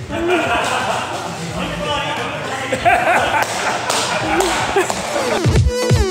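The electronic music drops out, leaving people's voices, including an exclamation at the start, and scattered knocks and taps. The music comes back near the end with deep falling bass swoops.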